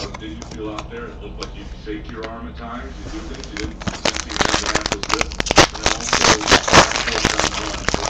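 A trading card pack wrapper being torn open and crinkled by hand: a dense crackling rustle full of sharp ticks that starts about halfway through and runs for about four seconds.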